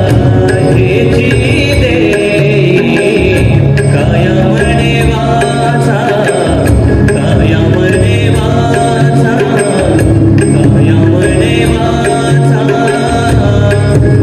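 Devotional bhajan: voices singing over sustained harmonium chords, with tabla and pakhawaj drumming.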